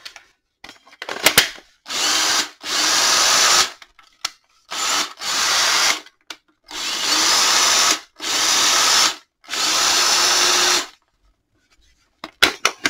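Black & Decker 18V cordless drill motor run in five short bursts of one to two seconds each, trigger pulled and released, after a few clicks about a second in. It is a test of the converted 18650 lithium-ion pack, and the drill runs well on it.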